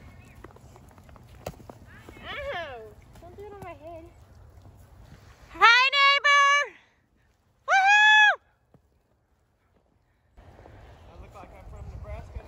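Voices calling out over a low outdoor rumble. A few short calls come first, then two loud, high, held calls about six and eight seconds in, the first rising at its start.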